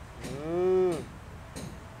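A single drawn-out low call, a little under a second long, that rises and then falls in pitch.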